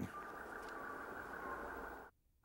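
Faint steady hum and hiss from an old film soundtrack, with a thin high tone held underneath.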